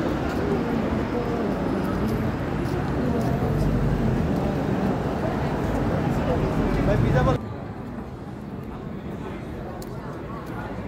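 Busy street ambience with indistinct voices of people talking close by. About seven seconds in, it cuts off abruptly to quieter street noise.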